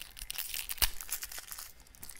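Plastic candy wrapper crinkling and tearing as a lollipop is unwrapped: a run of small crackles, with one sharp snap a little under a second in.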